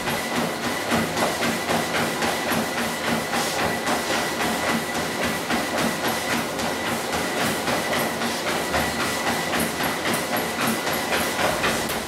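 Motorised treadmill running with a steady high whine, a Doberman's paws striking the moving belt in a quick, even rhythm.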